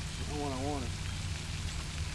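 Steady low outdoor rumble with a light hiss, and a short wavering voiced sound, like a hum, about half a second in.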